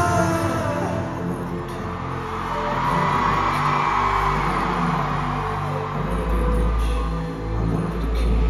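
Instrumental concert music played through an arena sound system, without vocals: held sustained tones, with a heavy deep bass entering about six seconds in.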